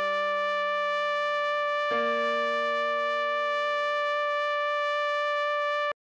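Electronic trumpet melody over sustained backing chords, with steady, even tones. One held note carries over from before, a new note and chord enter about two seconds in, and that note is held until it cuts off just before the end.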